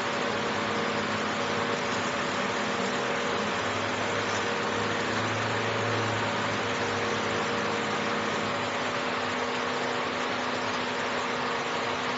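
Fiber laser marking machine with a rotary chuck running while it engraves a turning part: a steady hiss over a constant machine hum, the low hum swelling a little about five seconds in.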